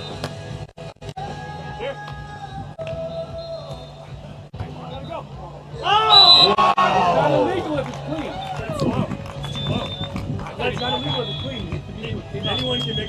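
Beach volleyball point ending in loud shouts and cheering from players and spectators, starting about six seconds in, with music playing underneath.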